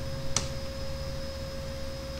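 A single keyboard keystroke click about a third of a second in, over a steady background hum with a constant pure tone.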